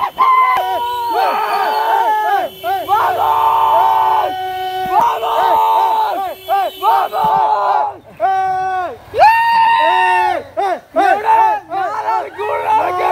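A group of men shouting and chanting together in celebration: loud, drawn-out cries with short overlapping yells between.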